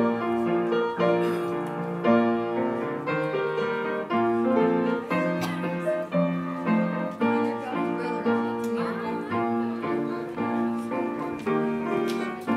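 Piano playing a hymn in chords that change about once a second, with no singing yet.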